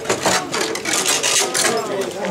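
Metal fittings of a Japanese mikoshi (portable shrine) jingling and clanking in a quick uneven rhythm, about two to three clatters a second, as the shrine is rocked on its carrying poles.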